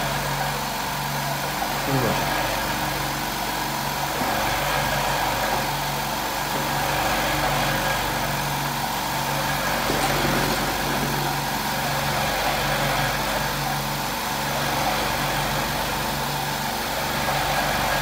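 Electric cigarette-rolling machine running steadily, its motor and filling mechanism cycling in an even, repeating pulse with a constant hum.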